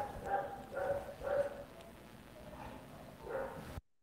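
A dog barking faintly in short, high yips, about five times, with a gap in the middle.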